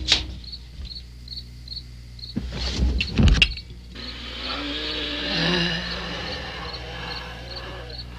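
Crickets chirping at night in an even rhythm, about three chirps a second. A sharp crack comes right at the start, and a louder burst of noise about two and a half to three and a half seconds in.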